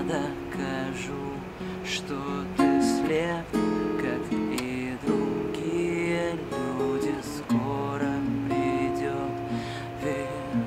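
Tanglewood acoustic guitar playing a song accompaniment, with a man singing over it in phrases that come and go.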